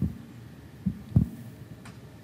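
Handling noise from a handheld microphone being passed from one person to another: three dull low thumps, the loudest a little after a second in, and a faint click near the end.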